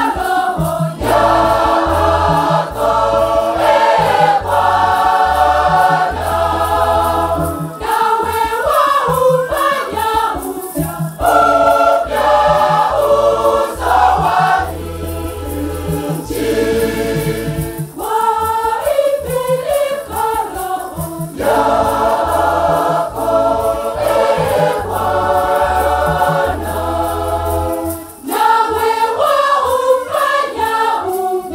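A mixed church choir of men and women singing a Swahili Catholic hymn in parts, over low bass notes held for a second or two at a time.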